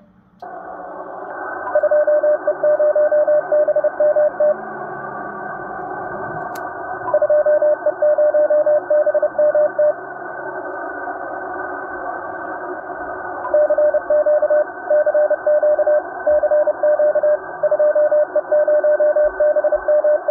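Morse code: a single steady tone keyed on and off in dots and dashes over the narrow-band hiss of a radio receiver. There are three runs of code with stretches of static between them.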